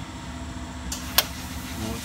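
Welder between tack welds on a car's floor patch: a steady low hum with one short, sharp crack about a second in.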